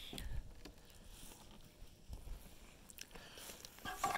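Faint footsteps crunching on gravel, with a few soft clicks and rubs of the phone being handled.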